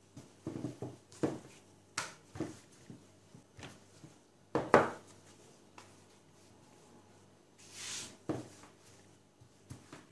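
Rolling pin working a round of yeast dough on a silicone baking mat: irregular soft knocks and taps as the pin is rolled, set down and picked up, with one louder knock about halfway. Near the end there is a short soft swish as the dough is handled.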